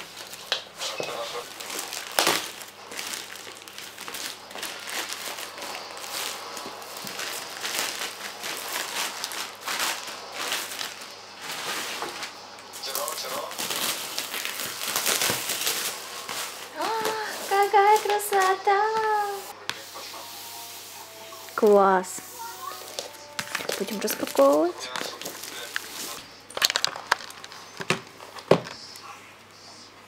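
Plastic mailer bag and packaging crinkling and tearing in dense rustling bursts as a parcel is opened and a boxed bathroom scale is unwrapped from its plastic bag. A woman's voice is heard briefly in the middle.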